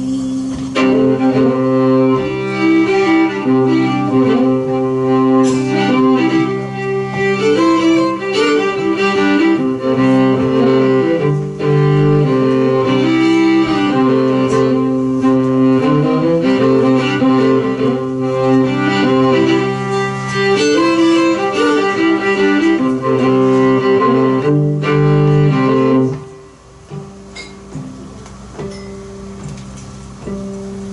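A fiddle plays an instrumental break between sung verses, with string-band backing and upright bass underneath. About four seconds before the end the playing drops to much quieter accompaniment.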